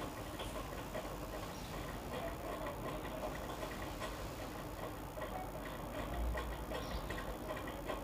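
Faint, irregular light clicks and ticks from hand work on a ceiling's metal framing track, over a low steady background noise. There is a soft low thump a little past six seconds.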